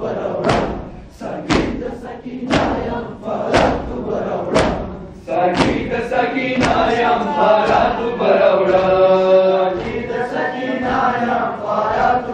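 A crowd of men beating their chests (matam) in unison, about one loud strike a second, with shouting voices between the strikes. About five seconds in, a group of male voices takes up a loud chanted lament, with the chest-beating going on more faintly underneath.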